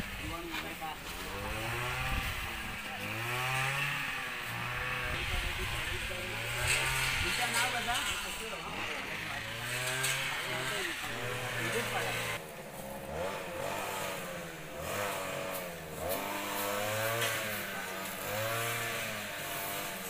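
A small engine runs throughout, its pitch rising and falling over and over, with people's voices underneath.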